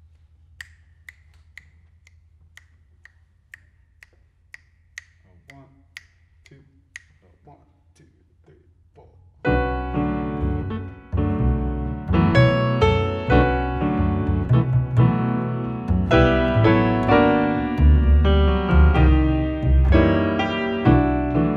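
Finger snaps keeping a steady beat, about two a second, counting off the tempo; about nine and a half seconds in, a grand piano and an upright double bass come in together playing a Brazilian jazz tune.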